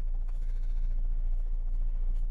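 A steady low hum under otherwise quiet room tone, with no distinct events.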